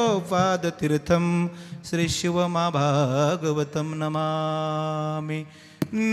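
A man's solo voice chanting a devotional verse in a melodic line over a microphone. The phrase ends on one long held note from about four seconds in, then breaks off briefly.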